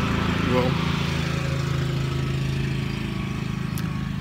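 A motor engine running steadily nearby, loud enough to cut off the talk; its note holds level and eases off slightly toward the end.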